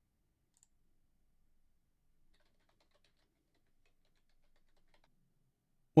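Near silence, with a few very faint short clicks scattered through it, about a second in, around two seconds and a cluster near the end.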